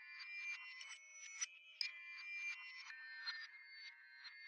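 A quiet, high-pitched synthesizer melody played from a MIDI keyboard: notes with sharp starts, a few each second, ringing into one another, thin with no low end.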